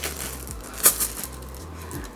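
Plastic zip-top bag of Skittles being handled, crinkling, with the candies clicking inside and one sharp click a little under a second in.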